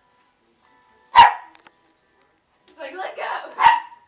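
Small dog barking: one sharp, loud bark about a second in, then a quick run of several barks near the end, the last one loudest.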